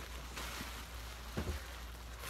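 Faint rustle of plastic bubble wrap on a moving body, with two soft knocks about one and a half seconds in.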